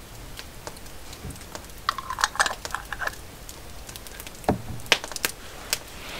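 Wood campfire crackling, with sharp irregular pops and ticks. A brief, denser scratchy noise comes about two seconds in, and a few louder pops come near the end.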